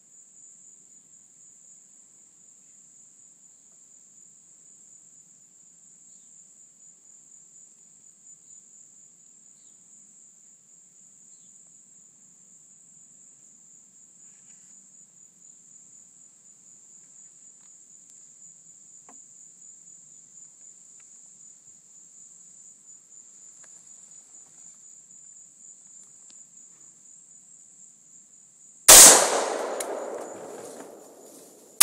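Insects droning steadily as a continuous high buzz. Near the end a single rifle shot from an AR-15 chambered in 7.62x40WT cracks out, by far the loudest sound, and its echo dies away over about a second.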